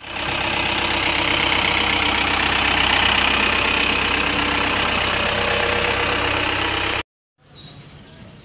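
Engine of an armoured police truck running close by, steady, with a wide rushing noise over it. It cuts off abruptly about seven seconds in.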